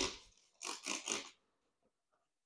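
Trigger spray bottle squirting liquid onto a plastic seat base: one spray right at the start, then three quick sprays in a row about a second in.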